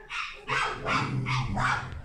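A dog barking several times in quick succession.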